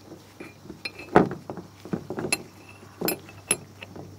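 Metal oil filter sandwich adapter with a brass fitting being handled and knocked against a plastic truck bed liner: a scatter of light clinks and knocks, the loudest about a second in.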